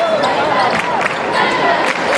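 Basketball dribbled on a hardwood court: sharp bounces about half a second apart, over the steady voices of an arena crowd.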